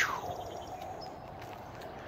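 Faint, steady outdoor background noise, opening with a short click.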